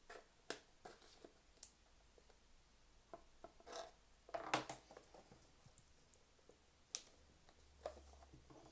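The metal end of a tape measure scraping and picking at the seal of a small cardboard box, faint scratches and clicks with the box being handled. A few louder scrapes come in the middle and a sharp click near the end.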